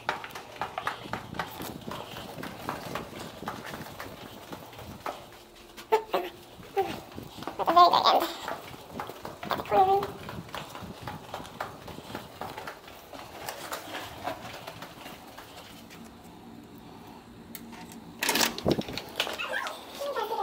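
A young child's short vocal sounds, twice, about 8 and 10 seconds in, over soft footsteps and handling clicks in a carpeted hallway. Near the end a loud clatter as a door is opened.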